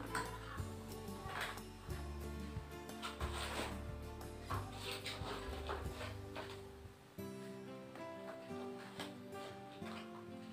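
Background music with held notes; about seven seconds in the bass drops out and the music changes. A few soft, irregular knocks sound during the first part.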